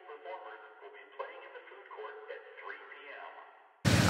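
A man's voice, faint and thin as if heard through a small speaker or radio, with no low end. Just before the end the sound cuts abruptly to much louder, full-range audio.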